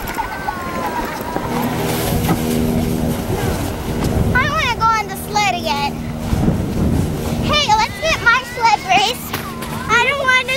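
Children's high-pitched shrieks and yells with wavering pitch, in bursts about halfway through and again near the end. Under them, a steady low hum runs from the first couple of seconds until about three quarters of the way through.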